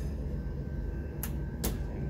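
Two sharp clicks, about half a second apart, over a steady low room hum: the door of a Thermo laboratory drying oven being shut and latched.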